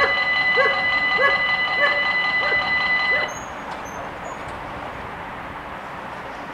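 Level-crossing warning bells ringing with a steady electronic tone, stopping about three seconds in as the barriers reach the closed position. A dog barks along with them, about twice a second, and falls quiet when they stop.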